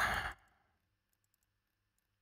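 A man's short, breathy exhale or sigh into a close microphone, right at the end of a spoken phrase, then near silence with faint room hum.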